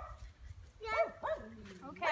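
Laughter and short pitched voice calls: a high call about a second in, followed by a lower call that slides down in pitch.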